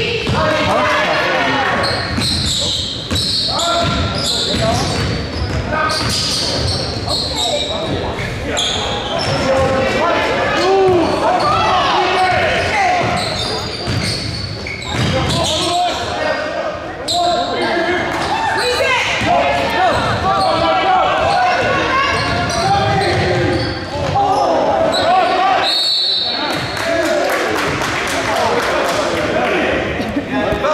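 Basketball game in a school gym: a basketball bouncing on the hardwood court, short high squeaks and players, benches and spectators shouting and talking over each other, echoing in the large hall.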